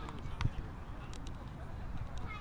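Distant voices of rugby players and spectators across a floodlit pitch, over a low uneven rumble on the camcorder microphone, with a sharp click about half a second in.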